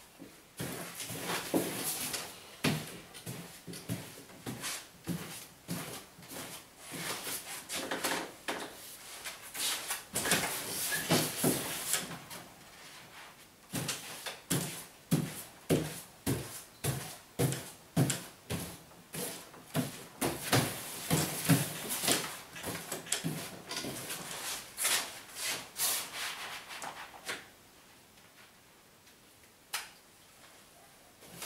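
Wide paste brush swishing wallpaper paste onto the back of a length of wallpaper laid on a wooden pasting table, in brisk repeated strokes about one or two a second. There is a short pause about halfway, and the strokes stop a couple of seconds before the end.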